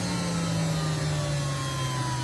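Electric juicer motor winding down after being switched off, its hum falling slowly and steadily in pitch.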